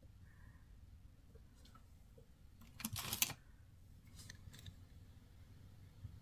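Quiet room with faint handling noises from craft work: a brief scrape or rustle about three seconds in, then a few light clicks a second later.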